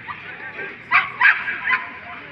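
Three short, sharp calls in quick succession, starting about a second in, over faint background voices.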